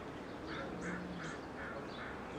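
Faint bird calls: a run of short, repeated calls about three a second, with higher chirps scattered among them.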